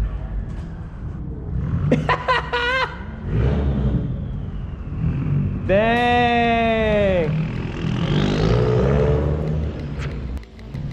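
The 2005 Subaru WRX's turbocharged flat-four engine rumbling as the car drives off. Short wavering shouts come around two seconds in, and a loud held note that rises and then falls comes about six seconds in.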